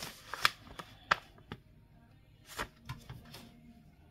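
A handful of separate light taps and clicks of small craft items and paper being handled on a wooden desk during a search for a brush, the sharpest about half a second and a second in.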